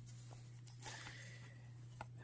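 Faint rustle and a few light clicks of a stack of cardboard baseball cards being slid and shifted in the hands, over a low steady hum.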